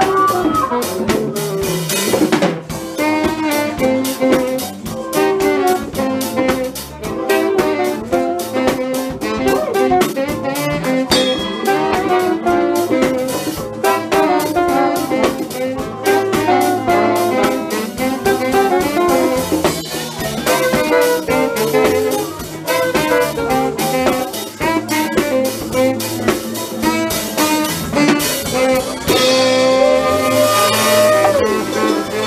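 Live band playing: a saxophone plays a moving melodic line over electric bass and a drum kit, loud and steady throughout.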